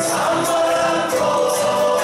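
A Chilean folk ensemble playing live, with several voices singing together in chorus over acoustic guitars and percussion.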